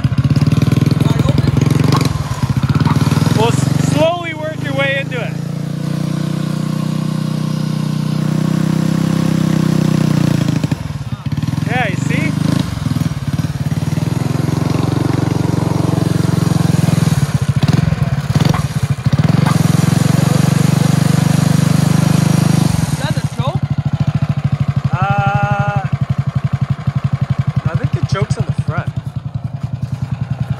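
Small gas engine of a tracked motorized snowboard running under throttle, its sound sagging and picking up again a few times. This machine only reaches about half speed before it bogs out, which the owner suspects is the choke or a fault left by earlier wiring damage.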